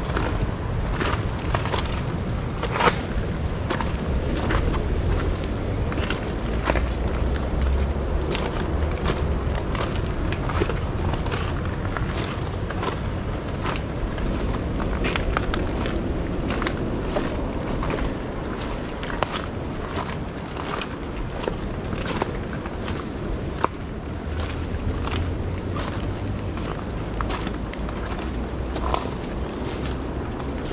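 Footsteps crunching on a crushed-gravel forest trail at a steady walking pace, about one step a second.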